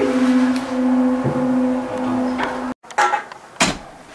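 Upright piano keys pressed down together in a dissonant cluster that rings on around a low held note, then cuts off abruptly about two-thirds of the way through. A few sharp knocks follow near the end.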